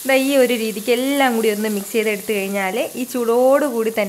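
A woman talking over curry leaves and dried red chillies sizzling in hot oil in a kadai as a tempering, stirred with a wooden spoon. Her voice is the loudest sound throughout.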